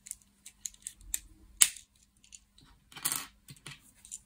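Plastic LEGO bricks clicking as they are handled and pressed together: a scatter of short sharp clicks, the loudest about one and a half seconds in, and a brief clatter near three seconds.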